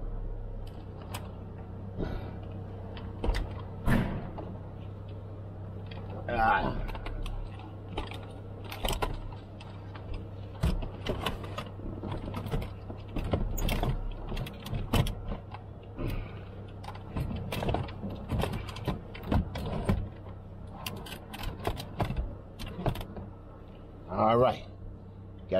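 Irregular knocks, clicks and rattles of things being handled and moved about inside a car, over a steady low hum.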